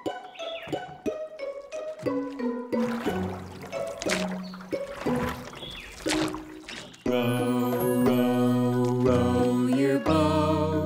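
Children's song intro music: light plinking notes with splashy water sound effects in the middle. About seven seconds in, a fuller, louder backing arrangement starts.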